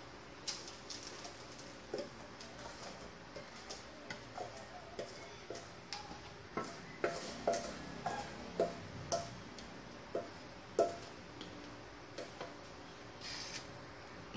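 Wooden spatula scraping and knocking against a stainless steel mixing bowl as thick brownie batter is scraped out into a baking pan: a string of irregular light taps, thickest in the middle, some with a brief metallic ring. A short rustle comes near the end.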